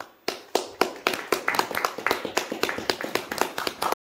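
A few people clapping in a small room, starting about a quarter second in with single claps, then quickening into uneven, overlapping applause.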